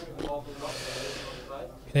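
A man drawing a breath through his mouth before he starts to speak, a soft hiss lasting about a second, after faint voices at the start.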